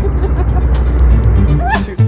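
Boat engines idling with a steady low rumble, people laughing over it.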